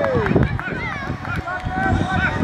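Sideline shouting at a youth football match: one long call falling in pitch right at the start, then several short high calls from young voices, over low rumbling outdoor noise.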